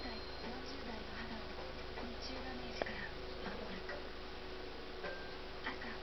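Faint room sound: a distant voice in the background over a steady hum, with scattered light clicks, one sharper click near the middle.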